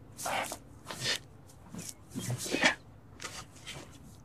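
Soil and leafy foliage rustling and scraping as a plant is pressed into the ground by hand: several short bursts, the loudest about two and a half seconds in.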